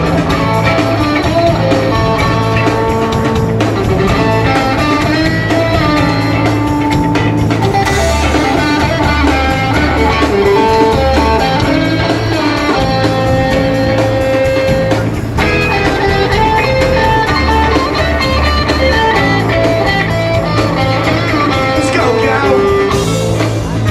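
Live rock band playing an instrumental jam: electric guitar lines over bass guitar and drums, with no singing.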